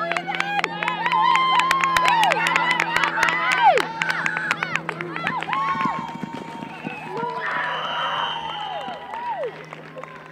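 Spectators and children shouting and cheering with high, drawn-out yells as a ball carrier runs in a youth flag football game, loudest in the first few seconds and easing off after about six seconds, with scattered sharp clicks mixed in.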